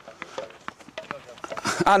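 Several hurleys tapping sliotars in quick, irregular clicks as a group of players does one-handed reverse taps, bouncing the ball on the back of the hurley's bas. A man starts speaking near the end.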